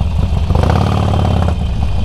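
Harley-Davidson Forty-Eight Sportster's air-cooled V-twin idling in slow traffic, a steady low rumble, with a fuller, pitched engine note for about a second in the middle.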